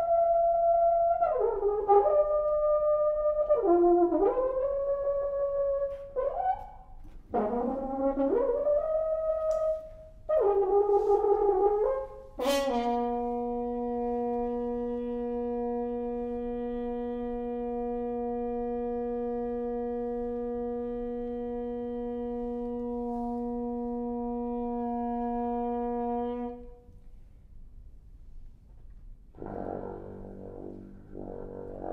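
Solo French horn: a string of short phrases with pitch bends and glides, then a sharp attack about twelve seconds in, opening one long low note held steady for about fourteen seconds. After a brief pause, a new note begins right at the end.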